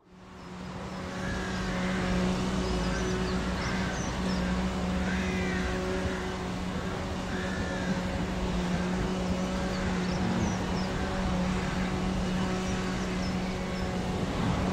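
A steady low hum with a rumbling background, with birds chirping and singing over it throughout. No rhythmic exhaust beat from the distant steam locomotive stands out.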